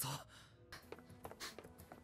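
A short breathy sigh at the very start, then faint background music with small quiet sounds.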